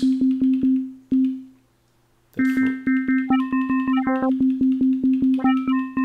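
Elektron Digitone FM synth playing a repeating sine-wave note with a sharp click about four times a second. It cuts out for about a second, then returns. Twice, turning the harmonics control adds higher overtones that step up and back down.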